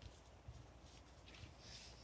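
Near silence, with a few faint soft taps and a brief paper rustle near the end as a cardstock card is slid and turned on a wooden tabletop.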